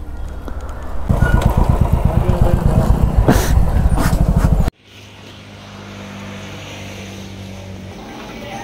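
Motorcycle engine running, louder from about a second in, with a fast, even low pulsing and two sharp knocks. It stops abruptly a little past halfway, leaving a quieter steady hum.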